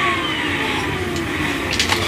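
Milwaukee M18 cordless vacuum's motor winding down after being switched off, its whine falling steadily in pitch and fading out about a second in. A few light knocks near the end.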